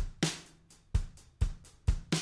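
Sampled acoustic drum kit from MainStage 3's Detroit Garage patch playing a beat, about five separate hits in two seconds. The compressor is still switched off, so the kit sounds uncompressed.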